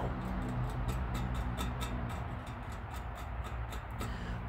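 Outdoor ambience: a steady low hum of road traffic, with a fast, even, high-pitched ticking about four or five times a second.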